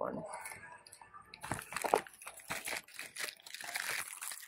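Clear plastic bag holding a set of rattan and wicker decorative balls crinkling as it is handled, a quick run of sharp crackles that is densest from about a second and a half in.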